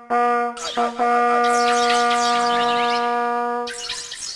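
Ensemble of hunting horns playing a held chord of several sustained brass notes, which breaks off shortly before the end.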